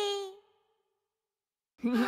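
A cartoon character's held, slightly falling vocal sound fades out within the first half second, followed by about a second and a half of silence. A new voice begins near the end.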